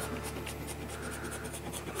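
A coin scratching the coating off a scratch-off lottery ticket in quick, repeated strokes.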